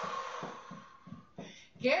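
A woman's long, deep breath out, lasting about a second and a half, with soft low thuds of feet marching on the floor beneath it. Near the end she says a word.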